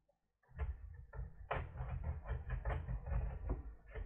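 Plastic palmrest of a ThinkPad T440s laptop being pried apart by hand at its edge: a fast, irregular run of clicks and scratchy creaks as the snap clips are worked loose, starting about half a second in.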